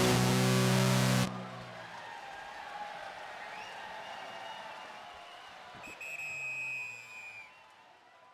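Live band's loud final held chord, with a wash of cymbal and distortion noise, cutting off suddenly about a second in. Quieter lingering tones ring on afterwards, with a brief high sustained tone near the end before it fades.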